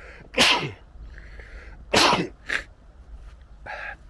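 A man sneezing twice into his hand, the two loud sneezes about a second and a half apart.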